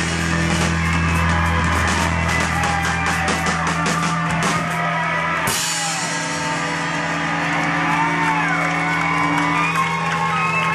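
Rock band playing live: electric guitars and bass hold one chord under rapid cymbal strokes. A cymbal crash comes about halfway, and the chord rings on with sliding guitar notes; it is the close of a song.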